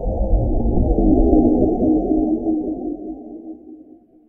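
Deep, low cinematic drone of an intro sound effect, with no higher sound above it. It is loudest early on and fades out near the end.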